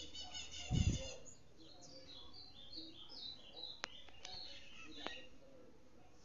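A small bird singing: quick high chirps, then a run of short notes stepping down in pitch. A low thump comes about a second in, and a few faint sharp clicks follow in the second half.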